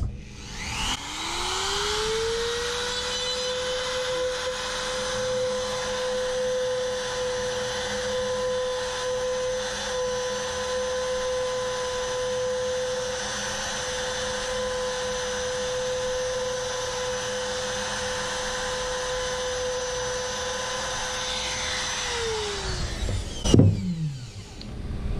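Handheld Bauer 1/4-inch trim router spinning up about a second in and running at a steady whine while it plunges into and routes out a small round pocket in the board's foam deck for an insert. It winds down and stops near the end.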